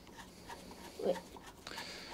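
Mostly quiet, with a few faint small clicks from fingers working the centre screw of a lawnmower's recoil pull-starter, and one short faint spoken word about a second in.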